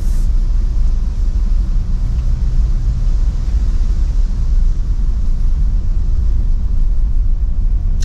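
Steady low rumble of a car being driven, heard inside the cabin: engine and road noise with no other event standing out.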